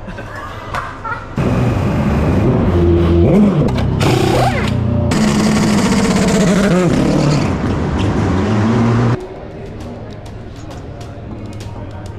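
Music mixed with a race car's engine running and revving. It is loud from about a second and a half in and drops off sharply near nine seconds.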